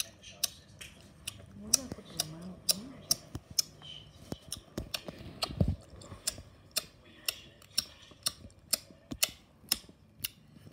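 Loud open-mouthed chewing close by: a steady run of sharp smacks, about two or three a second. A brief low voice sound comes about two seconds in, and a dull thump a little past halfway.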